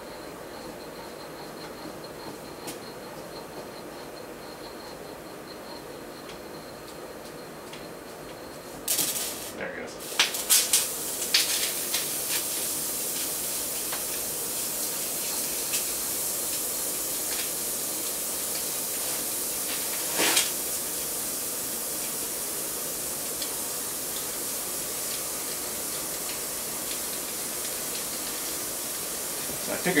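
Compressed-air blow gun pushed into an oil fitting of a Bridgeport milling machine, blowing air through a way-oil passage that had been clogged with old grease. After about nine seconds of quiet, a sudden burst of hissing with a few clicks, then a steady hiss of air going through.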